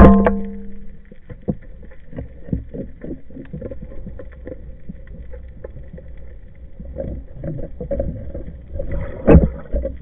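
Underwater speargun shot right at the start, its shaft and line ringing with several clear tones that die away within about a second as the shaft strikes a dentex. Irregular clicks and knocks from the gun and line follow over a low rumble, with a louder knock about nine seconds in.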